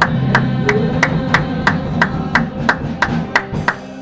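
Live gospel praise band music with a steady beat of sharp hits, about three a second. The band's low notes drop out near the end.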